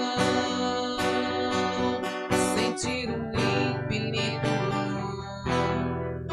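Strummed acoustic guitar accompanying a worship song.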